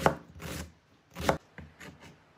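A kitchen knife cutting through a new onion on a plastic cutting board, four separate cuts in two seconds.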